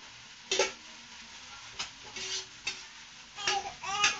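Food sizzling as it fries in a pan, with a spatula scraping and knocking against the pan about five times.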